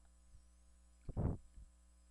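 Steady low electrical mains hum in the recording, with one brief, soft, low sound a little past one second in.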